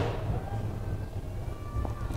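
Big-store background: a steady low hum with faint background music and a brief click at the start.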